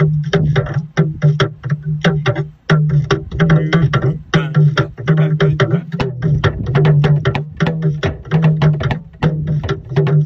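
Talking drum struck with a curved stick in a fast, even run of sharp strokes, about six a second, over the drum's low pitched tone sounding in short spans.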